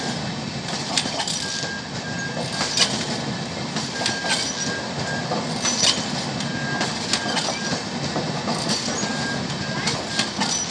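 Passenger train coaches rolling past close by: a steady rumble and hiss of wheels on rail, with sharp clicks about every second as the wheels run over the track.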